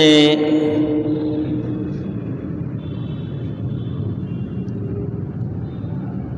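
A man's voice ends a word through a microphone and loudspeaker system. Its tone lingers and fades over about two seconds in a reverberant hall. A steady low background rumble follows.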